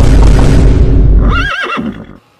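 A loud sound-effect burst with a heavy deep rumble, like a boom or crash, cut in over a comic shocked reaction. It falls away about one and a half seconds in, and a short quavering high cry follows near the end.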